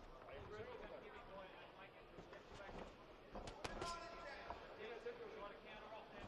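Quiet boxing-arena ambience with faint shouted voices from around the ring and a few sharp thuds a little past halfway.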